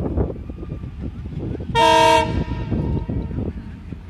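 One short blast, about half a second long, of a WDM-3D diesel locomotive's ALCO horn about two seconds in: a chord of several steady tones. Wind buffets the microphone throughout.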